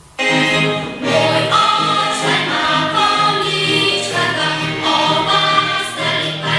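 Music with a choir singing, cutting in abruptly just after the start.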